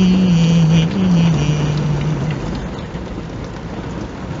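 A man's singing voice holds the final sung note "me" for about two seconds, stepping down in pitch before it stops. A steady rushing noise inside the car runs underneath and carries on alone after the voice ends.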